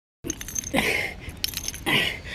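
A man grunting hard with effort twice, about a second apart, as he works through push-ups.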